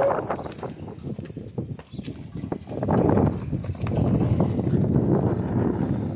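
Two dogs playing together on concrete: scuffling, with paws scrabbling and rough dog noises. It grows louder about halfway through.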